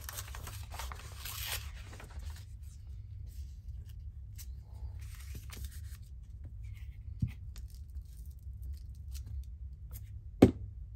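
Paper being torn and handled for the first two seconds or so, then quieter paper rustling with a single sharp knock about seven seconds in, over a steady low hum.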